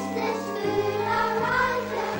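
Sung theme tune: a choir singing the melody over a bass line whose low notes change about every half second.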